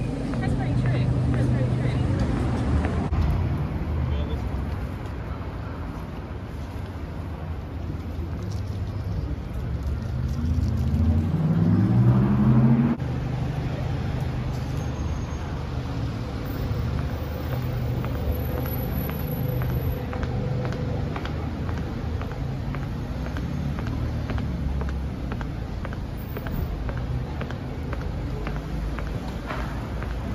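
Street traffic: vehicle engines running close by as a low rumble. About ten seconds in, one engine rises in pitch as it accelerates, then the sound drops off suddenly, leaving a steadier, quieter traffic rumble.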